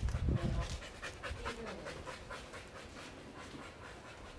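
A dog panting close by in a quick, even rhythm of about five or six breaths a second, after a bout of fetch. A low rumble fills the first second.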